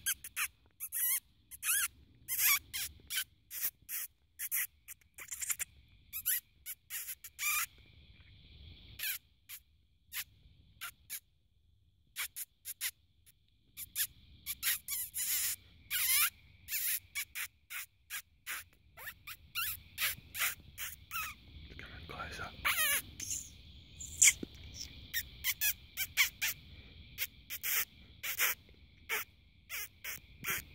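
Predator-calling squeaks used to lure a fox: runs of short, sharp, high-pitched squeaks like a small animal in distress, a few drawn out into wavering squeals a little past the middle.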